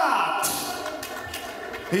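The drawn-out end of a ring announcer's call of a fighter's name, the voice falling in pitch and then echoing away in a large hall, over faint background music.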